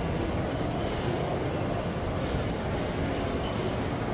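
Steady indoor shopping-mall background noise: a low, even rumble with no distinct events.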